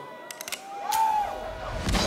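Festival sound system between songs: a few sharp clicks and a faint crowd murmur, then near the end a rising bass rumble and a heavy bass hit as the next track's beat comes in.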